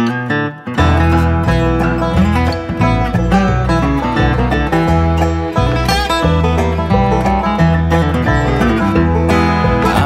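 Acoustic bluegrass string band playing the instrumental opening of a song: plucked strings, with guitar and banjo prominent, over a steady bass line. It starts out of silence and is at full ensemble from about a second in.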